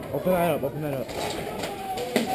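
Indistinct voices of people talking nearby, the words not clear. In the second half there is a run of faint, quick clicks.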